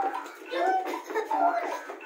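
Singing of a children's English action song, the melody moving up and down in short phrases, with hiss-like noise from the children moving around the room.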